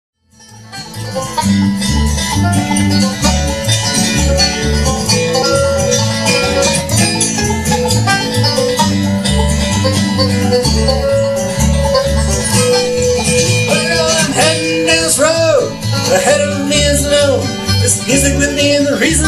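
Live bluegrass band playing without vocals: banjo, upright bass, acoustic guitar and fiddle, with a steady walking bass pulse. It comes in within the first second, and sliding melody notes stand out near the end.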